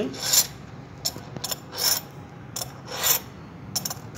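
A round chainsaw file in a filing guide being drawn across the cutters of a Stihl saw chain: a series of separate rasping file strokes, the chain being sharpened by hand.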